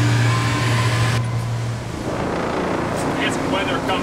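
Steady low hum of ship's deck machinery with a hiss over it. The hiss drops away about a second in and the hum stops abruptly about two seconds in, leaving quieter deck noise with faint voices.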